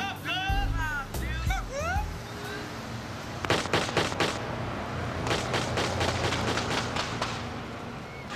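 Gunfire from a drive-by shooting: a quick volley of shots about three and a half seconds in, then a longer run of shots over the following few seconds. Voices call out in the first two seconds.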